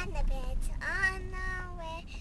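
A young girl singing in a high voice: a short phrase, then a long held note about a second in that falls slightly at its end. A steady low rumble of road noise inside a moving car runs underneath.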